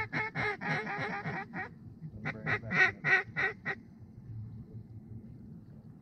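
Duck quacking in two rapid runs of short, evenly spaced quacks, the second run coming after a brief pause, about two seconds in.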